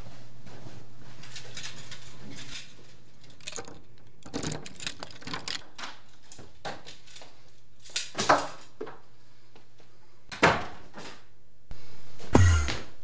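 A steady low hum stops early on, giving way to scattered clicks and knocks of a room door being handled and footsteps, with one loud thump about ten seconds in as the door shuts.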